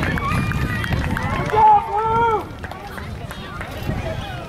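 Several high-pitched excited voices shouting and cheering at once in celebration of a win, with two long drawn-out calls the loudest about halfway through before the cheering eases off.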